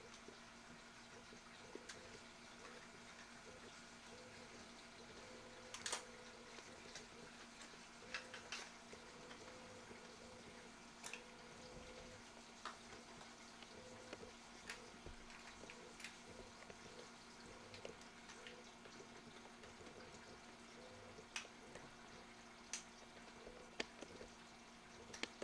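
Near silence: a steady low hum with scattered faint clicks and ticks, the loudest about six seconds in.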